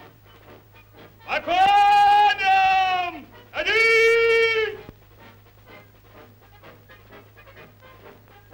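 A man's voice shouting two long, drawn-out held calls, the second higher than the first, like a commander's drawn-out order to massed cavalry. Between and after the calls there is only a faint, irregular low patter.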